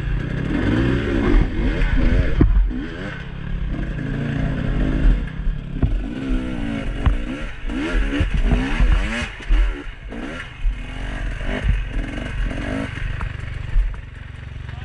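Dirt bike engine revving up and down again and again as the throttle is worked over rocky ground, with scattered knocks and clatter from the bike striking rock.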